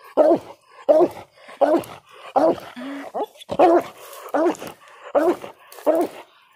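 A coon-hunting hound barking at a den tree in a steady run of short barks, a little more than one a second. This is tree barking, the sign that the dog has treed a raccoon he takes to be in the hollow.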